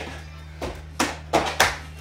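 Background workout music, with about four short slaps of bare hands on a hardwood floor in the second half as the hands walk back from a plank.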